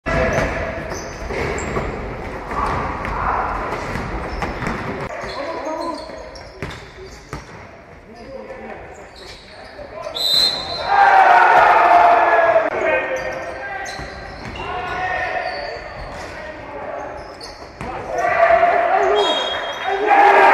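Basketball game sound in a large gym hall: the ball bouncing on the hardwood floor with sharp knocks, and players shouting, loudest in two bursts around the middle and near the end.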